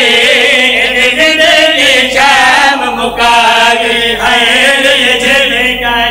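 A group of men chanting a noha, a Shia Muharram lament, together into microphones, their amplified voices holding long, wavering sung lines without a break.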